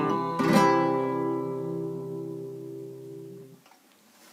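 Nylon-string classical guitar playing the song's closing chord: one strum about half a second in, left to ring and die away, stopping shortly before the end.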